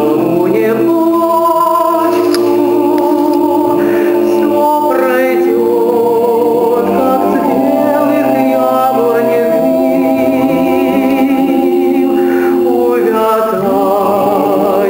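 Male vocal ensemble of five singing a Russian song a cappella in close harmony, the voices holding long notes with vibrato.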